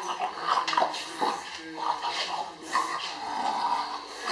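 English bulldog snuffling and breathing noisily while it play-bites and nuzzles a person's hands, with voices behind.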